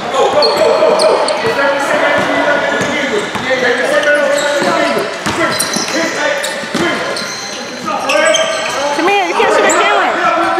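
Basketball game play in a gym: a ball bouncing on the court and sneakers squeaking in short, high chirps as players cut and run, with players and spectators calling out, loudest near the end.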